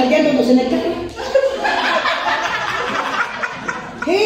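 A woman talking animatedly, mixed with chuckling laughter.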